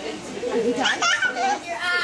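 A one-year-old baby's high-pitched babbling and happy vocal sounds, rising and falling in pitch.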